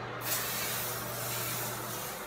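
Aerosol air freshener can sprayed in one long continuous hiss, starting abruptly just after the start.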